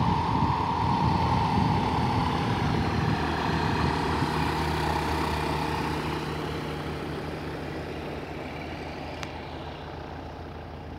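Light aircraft piston engine and propeller running at taxi power, a steady drone that slowly fades away.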